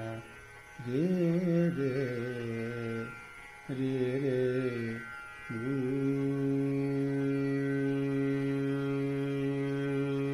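Male voice singing a Dhrupad alap in nom-tom syllables over a steady drone: slow wavering phrases broken by short pauses, then one long held note from about the middle on.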